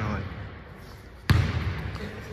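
A basketball bouncing on a hardwood gym floor: one sharp, loud bounce about a second and a quarter in, just before a jump shot.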